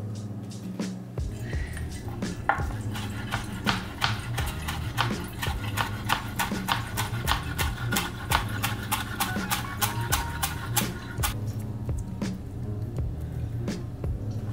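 Chef's knife chopping fresh dill on a cutting board: a quick, even run of knocks, about three or four a second, that stops about 11 seconds in. Background music plays underneath.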